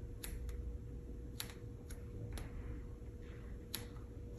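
A fine paintbrush tapping and flicking on paper in short strokes: a handful of faint, sharp clicks at uneven intervals, over a low steady hum.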